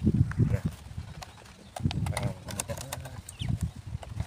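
Machete blade cutting and knocking against a thin plastic water bottle: a run of irregular knocks and clicks, quieter for a moment about a second in.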